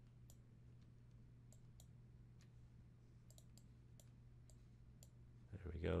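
Faint computer mouse clicks, scattered and sometimes in quick clusters, over a steady low electrical hum.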